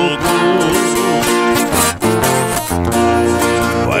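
Música caipira played on a viola caipira and an acoustic guitar, strummed and plucked in a short instrumental passage between verses, with the voice coming back in on a new sung line at the very end.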